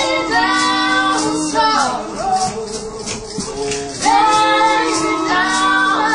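A woman's lead voice belting long held notes with a small group of men and women singing harmony around her, largely unaccompanied, with a light steady percussive beat underneath.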